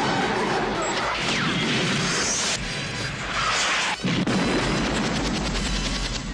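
Loud action-film sound effects of crashing and explosion-like booms, mixed with the trailer's music score. There is a sharp impact about four seconds in.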